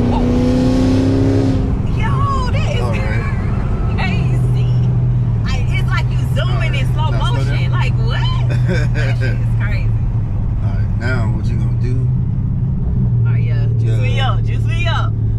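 Supercharged Dodge Charger Hellcat V8 heard from inside the cabin, pulling hard with a rising pitch for the first couple of seconds, then easing off to a steady low drone as the car cruises. Voices talking over it.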